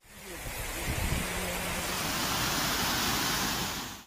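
Muddy floodwater rushing along a swollen stream: a steady, even rush of water that fades in at the start and out just before the end.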